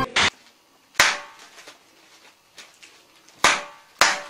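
Two sharp, separate snaps, about two and a half seconds apart, each dying away within half a second, after a brief burst at the very start.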